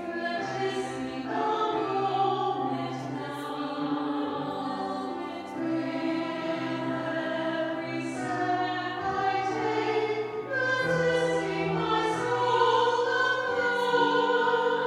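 Choir singing a hymn, held notes moving from chord to chord.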